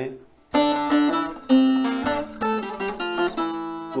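Long-necked bağlama (uzun sap saz) picked with a plectrum: a short melodic phrase of about ten plucked notes, starting about half a second in.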